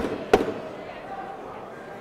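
Two sharp smacks of boxing gloves landing, about a third of a second apart right at the start, followed by low arena noise.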